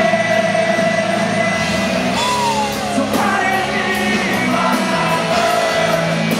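Live rock band playing, with a male lead singer holding one long note and then sliding down from a higher note about two seconds in, over drums and crashing cymbals.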